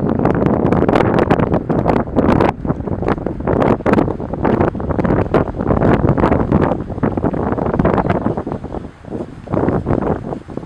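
Strong wind buffeting the camera's microphone in rough, uneven gusts, easing a little near the end.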